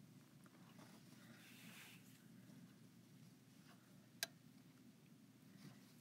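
Near silence: room tone, with one brief sharp click about four seconds in.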